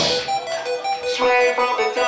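Live rock band dropping to a break: the drums and heavy guitars fall away and a keyboard plays a short melody of separate single notes.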